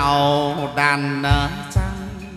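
Instrumental passage of Vietnamese chầu văn (hát văn) music: a sliding, ornamented melody line over a few low drum beats.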